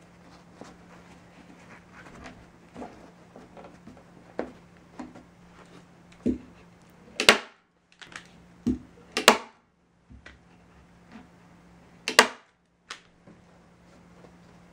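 Manual staple gun firing staples through upholstery fabric into a wooden table frame: three sharp snaps a few seconds apart, the first two each preceded by a softer knock, with light fabric rustling between.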